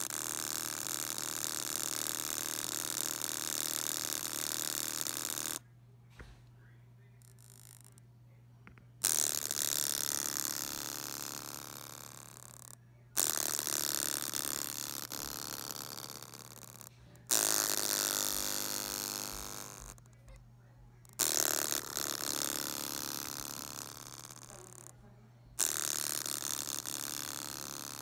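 Small, damaged loudspeaker driven at full volume, putting out a harsh, distorted buzzing. It comes in about six stretches that each start suddenly and fade over a few seconds, with brief gaps between and a steady low hum underneath.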